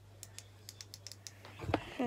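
Light scattered clicks and taps from fingers handling a phone in a ring-light holder, over a steady low hum. A bump and rustle of handling come near the end as the phone is moved.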